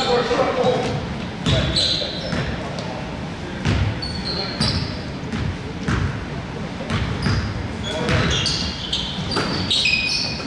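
A basketball bouncing on a hardwood gym floor during play, with sneakers squeaking in short high squeals and players' voices calling out, all echoing in a large gym.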